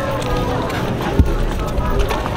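Outdoor street ambience: indistinct voices and music over a steady low rumble, with a single thump a little past a second in.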